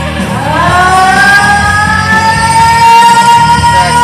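Karaoke singing over a loud rock backing track: a woman's voice slides up into one long high note about half a second in and holds it steady.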